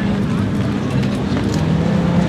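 Audi R8 V10 Plus's 5.2-litre V10 idling steadily as the car creeps forward at low speed, its pitch dipping slightly near the end.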